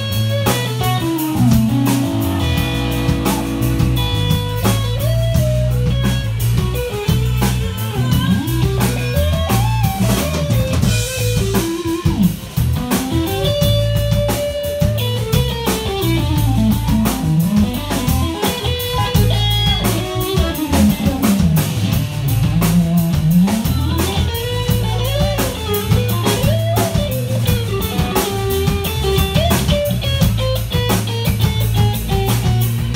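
Live band playing: a lead electric guitar line with notes bending up and down in pitch over bass guitar and drum kit.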